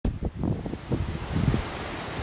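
Wind gusting over the microphone in irregular low rumbles, the buffeting of a strong breeze across open grassland.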